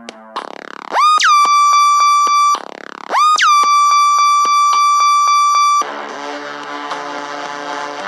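Electronic music made in GarageBand: a synthesizer tone that swoops up and holds a high, steady note, twice, over short regular hits about four a second. From about six seconds in, a fuller section of layered keyboard-like chords takes over.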